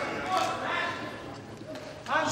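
An indistinct voice in a large hall, fading after about a second to quieter room noise.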